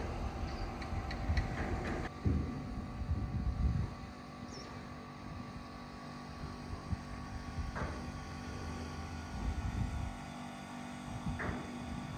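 A steady low engine hum with a few constant tones, broken by gusts of wind buffeting the microphone a couple of seconds in and again near the end.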